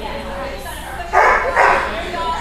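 A dog barking twice in quick succession, two loud short barks about a second in, over the murmur of voices in a large hall.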